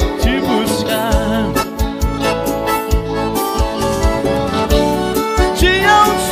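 Live sertanejo band music: a piano accordion playing a melody over a steady drum beat of about two thumps a second.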